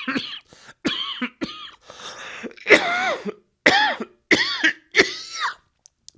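A man's coughing fit: about six coughs in a row, some with a short rasping voiced edge, coughed into his hand.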